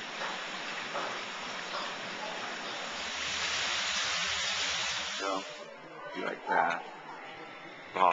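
Hot spring water falling in a small cascade over a stone overflow, a steady rushing hiss that swells and then stops sharply about five and a half seconds in. Brief voices follow.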